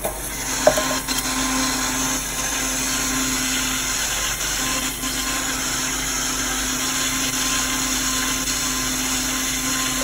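Countertop blender running steadily, blending watermelon with lemon, ginger and turmeric into juice. A cup clinks once near the start.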